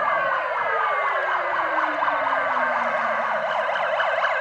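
Several emergency-vehicle sirens sound at once, from a police car and an ambulance. A fast up-and-down yelp runs over slower sweeping wails, and one tone slides steadily down in pitch.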